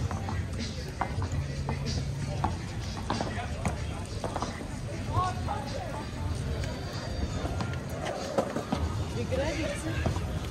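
Busy outdoor pedestrian ambience: music playing, indistinct voices of passers-by talking, and scattered short clicks and knocks throughout.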